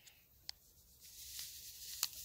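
Dry baker's yeast granules poured from a paper sachet into a plastic jug of warm water: a faint hiss that starts about a second in and grows slightly, after a light tick about half a second in.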